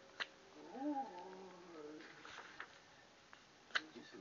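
A short pitched cry that rises and then falls, about a second in. Sharp clicks come just after the start and again near the end.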